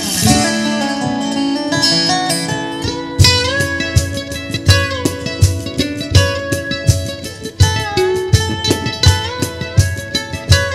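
Resonator guitar (dobro) played lap-style with a slide and fingerpicks in an instrumental break: picked phrases with notes gliding up and down between pitches, over a regular low accompaniment.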